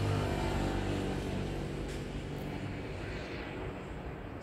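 A low, steady mechanical hum of fixed pitch that fades away over the first couple of seconds, leaving a quieter background hiss.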